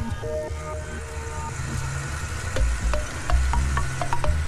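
Low, steady rumble of a moving bus with a few faint clicks, under background music of long held notes.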